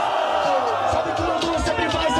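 A crowd of spectators letting out a long, collective "Ooooh!" in reaction to a freestyle rap punchline, slowly falling in pitch, over a hip-hop beat. It gives way to a man's voice near the end.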